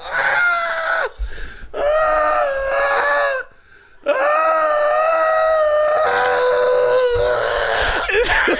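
Men laughing uncontrollably in long, high, held shrieks of laughter with a wheezing edge. A short shriek is followed by one of almost two seconds, then a brief silent gasp for breath past the middle, then a single unbroken shriek of about four seconds that sags slightly in pitch near the end.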